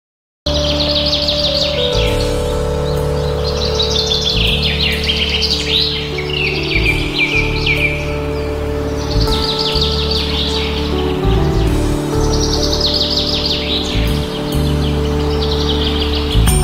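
Background music of slow held chords with bird chirping laid over it, the chirps coming in repeated phrases of quick twittering.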